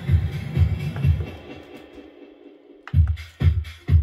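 Electronic dance music played on a Pioneer DDJ-FLX6-GT DJ controller, with a steady kick drum about twice a second. About one and a half seconds in, the bass and kick fade out, leaving only the thin upper part of the track. Just before three seconds they come back suddenly.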